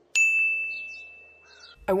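A single bright notification ding, struck sharply just after the start. Its high tone rings steadily and fades away over about a second and a half. It is a phone's new-message alert.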